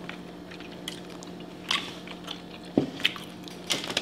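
Close-miked chewing of cooked octopus head: short wet mouth clicks and smacks every half second or so.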